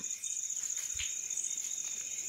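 An insect trilling steadily at a high pitch in rapid pulses, with one soft knock about a second in.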